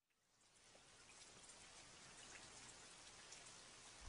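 Very faint steady hiss scattered with light ticks, like soft rain, fading in gradually after a moment of silence.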